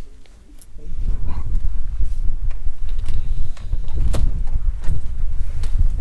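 Wind buffeting the camera's microphone: a loud, rough low rumble that sets in about a second in, with a few faint clicks over it.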